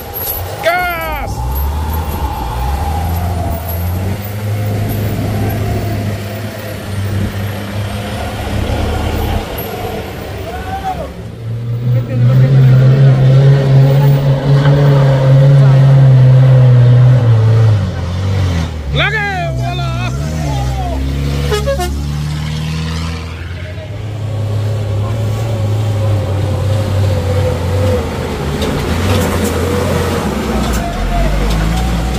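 Engines of small trucks climbing a steep, rough dirt road one after another: a Mitsubishi Fuso Canter box truck, then a Mitsubishi pickup, then an Isuzu Elf truck. The engine sound is loudest and steadiest from about 12 to 17 seconds, as the pickup climbs close by.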